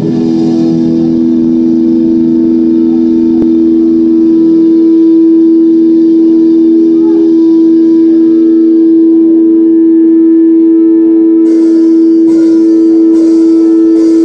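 Amplified electric guitar holding one long sustained note as a loud, steady drone, with a few light clicks in the last few seconds before the band comes in.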